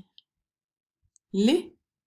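Speech only: a woman's voice saying the single Swedish syllable "li" once, slowly and clearly, about a second and a half in, with a faint short click before it.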